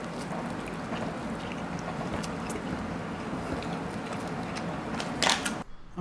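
A person chewing a large mouthful of burger close to the microphone: small wet mouth clicks and smacks over a steady background hiss, with a louder cluster of smacks near the end before the sound cuts off suddenly.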